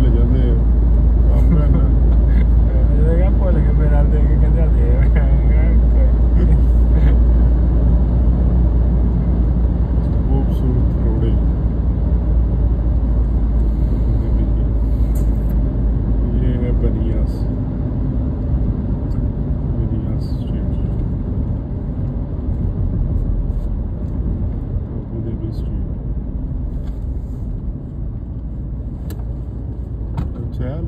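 Steady low rumble of road and wind noise inside a moving car at highway speed. It eases in the second half as the car slows onto an exit ramp.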